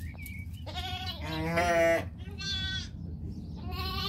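Lamb bleats: four calls in a row, the second long and loudest with a quavering pitch, the others shorter.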